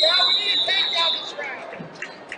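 A voice shouting loudly over a long, steady, high-pitched whistle blast, both lasting about the first second and a half before dropping back to background hall noise.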